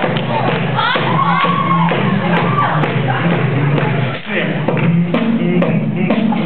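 Beatboxing over a PA: mouth-made percussion clicks over a steady low bass hum, with sliding vocal sweeps about a second in.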